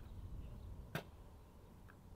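A single sharp click about a second in, over a low steady rumble, with a much fainter tick near the end.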